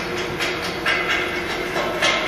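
Billet casting machine running while molten iron pours into its molds from a crane-hung ladle: a steady machine hum under a quick, uneven metallic clatter, a few rattles a second, louder near the end.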